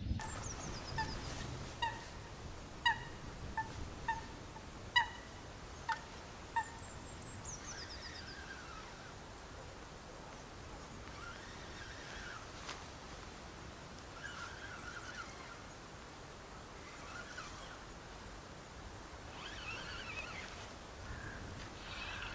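Wild birds calling: a run of about eight short, sharp pitched calls, roughly one a second, over the first seven seconds, with thin high chirps and a quick descending trill around them. Softer twittering follows through the rest.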